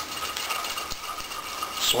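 Sandpaper wrapped around a rat-tail rasp scraping around inside a drilled half-inch hole in a plywood clamp bar. It is a rapid, even scratching that goes on throughout.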